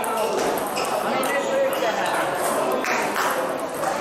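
Table tennis rally: the celluloid-type plastic ball ticking sharply off the bats and table several times, with hall echo.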